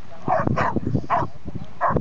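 A dog barking in a few short bursts while a person laughs.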